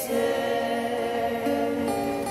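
Voices singing a slow worship song in long held notes, the melody stepping to a new note about a second and a half in.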